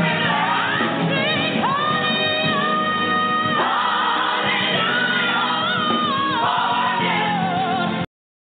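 Gospel choir singing with musical accompaniment, held notes and sliding vocal lines; the music cuts off suddenly at the end.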